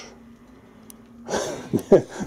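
Quiet room with a faint steady low hum, then a man's voice starting about one and a half seconds in.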